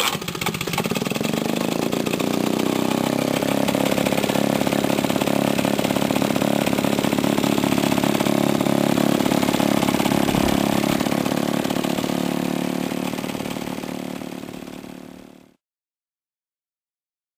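Maytag Model 72 twin-cylinder two-stroke engine catching as soon as it is kick-started, picking up speed over the first couple of seconds, then running steadily with a rapid even firing beat. It runs on worn crankcase bushings that draw in extra air, and the sound fades out near the end.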